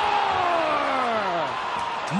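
TV hockey play-by-play announcer's long drawn-out shout, one held call that falls steadily in pitch over nearly two seconds as the overtime winning goal goes in, over arena crowd noise.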